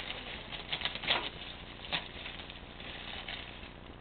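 Soft rustling and a few brief scraping sweeps as raw wool is handled at a wooden hand wool-carding machine.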